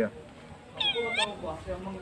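A man imitating a great thick-knee's call by mouth through his cupped hand. One short whistled call comes about a second in, lasting about half a second, dipping in pitch and climbing back up.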